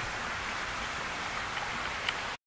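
Steady rushing hiss of outdoor background noise, with no clear events in it.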